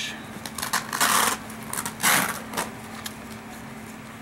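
Handling noise as a fabric morale patch is fitted onto a nylon bag's hook-and-loop panel: two short rustles about a second and two seconds in, with small scattered clicks.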